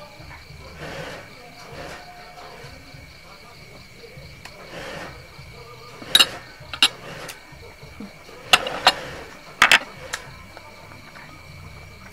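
A knife and fork working a cooked bamboo tube of sticky rice open: soft scraping, then sharp clicks and knocks in two short clusters past the middle. Crickets chirr steadily throughout.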